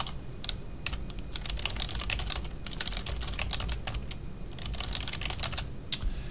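Typing on a computer keyboard: quick runs of keystrokes with a short pause a little past the middle.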